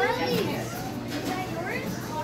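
Children's voices, high-pitched calls and chatter, over the murmur of a busy room.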